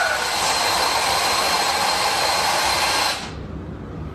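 Remote-control toy tank giving a loud, steady whirring hiss with a thin high whine, which cuts off suddenly about three seconds in.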